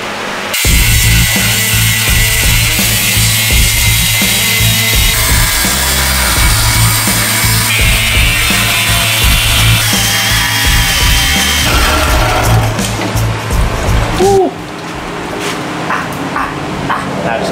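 Background music with a steady beat over power tools cutting steel, among them an angle grinder cutting a steel piece clamped in a vise. The tool sounds change abruptly every few seconds, and all of it cuts off suddenly near the end.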